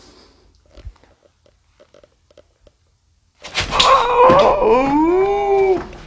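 A few faint clicks and taps, then about three and a half seconds in a loud, long wailing cry: harsh at first, then one drawn-out howl-like tone that rises and falls in pitch before it cuts off near the end.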